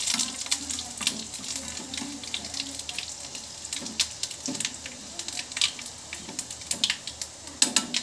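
Oil sizzling in a small steel pan as dried red chillies and seeds are stirred with a spoon for a tempering, with a steady hiss and many scattered pops and spoon clicks.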